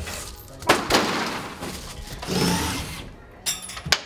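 Plywood set pieces being torn down and dropped: a sharp wooden knock and a thud about a second in, as a cut-out plywood frame lands, and two more knocks near the end.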